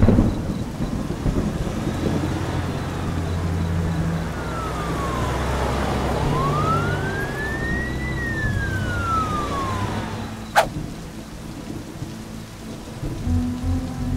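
Steady heavy rain with a thunderclap at the start. In the middle a police siren wails once, slowly down, up and down again, peaking about eight seconds in. A sharp crack follows near the end.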